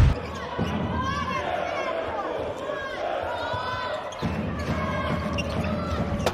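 Handball court sounds: the ball bouncing on the hall floor, players' shoes squeaking and voices calling out. It opens with the loud tail of a transition swoosh.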